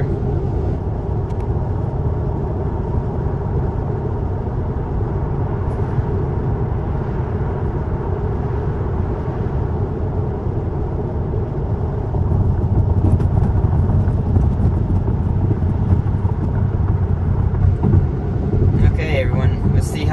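Tyre and wind noise inside a Tesla's cabin at highway speed: a steady low rumble with no engine note, getting louder about twelve seconds in.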